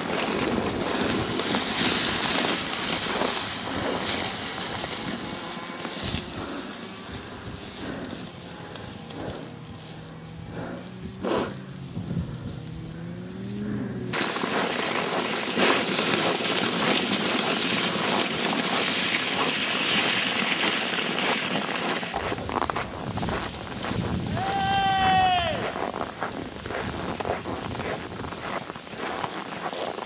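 Crackling crunch of footsteps and a pulled sled on packed snow. About two thirds of the way through there is one short, high, falling call, like a distant voice.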